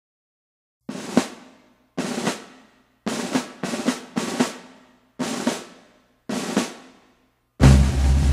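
Military band snare drums playing a series of short rolls, each ending on an accented stroke, about once a second after a second of silence. Near the end the bass drum joins in with a louder, heavier hit.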